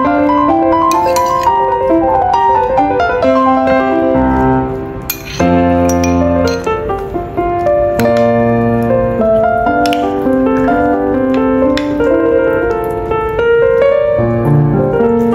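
Background piano music: a steady, gentle melody of held notes moving in steps, with low bass notes joining in about four seconds in.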